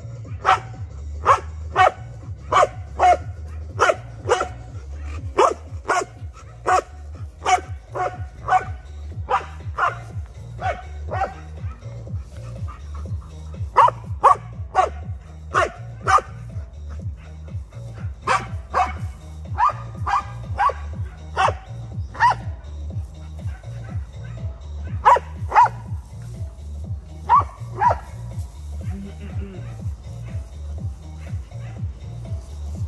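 A dog barking over and over, about two barks a second for the first ten seconds or so, then in looser runs with short pauses. Background music with a steady low beat plays under it.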